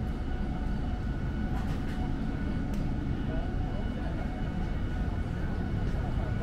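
Night city street ambience: a steady low urban rumble of distant traffic, with faint voices of people nearby and a few faint clicks.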